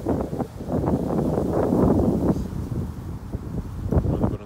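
Gusty wind buffeting the microphone, with tall reeds rustling; the gusts are strongest about two seconds in.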